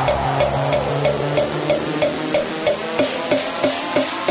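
Fast hardcore dance track with a steady beat of about three hits a second and a synth sweep falling in pitch. The bass drops out about three seconds in.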